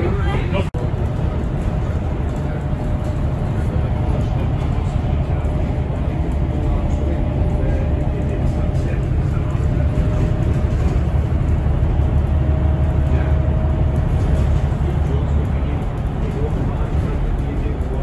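Steady low rumble of engine and road noise heard inside a moving road vehicle, with a brief dropout under a second in.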